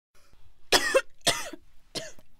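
A person coughing twice, two short harsh bursts about half a second apart.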